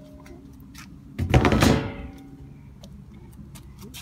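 Plastic access door of an RV tankless water heater being swung open: a short, loud scraping rush about a second in, falling in pitch over under a second, with a few faint clicks before it.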